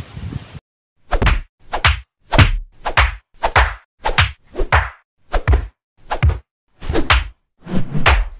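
Dubbed fight-scene punch sound effects: a rapid series of about a dozen sharp whacks, roughly two a second, each with a quick swish. Before the first hit, insects chirring in the background are cut off abruptly.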